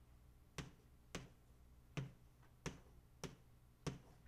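Chalk striking a blackboard while a diagram is drawn: six sharp taps at uneven intervals of about half a second to a second, with quiet between them.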